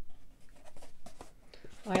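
Cross-stitch pattern packets being handled: a soft rustling of paper and plastic with a few small clicks as one pattern is set down and the next is picked up.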